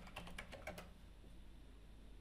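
Computer keyboard keystrokes: a quick, faint run of about half a dozen key presses in the first second as a word is typed.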